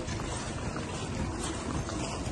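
Wind rumbling on the microphone of a handheld camera, over an even outdoor hiss.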